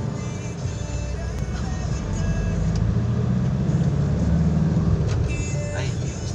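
Low rumble of a car driving in traffic, heard from inside the cabin, swelling a little after about two seconds, with music playing in the background.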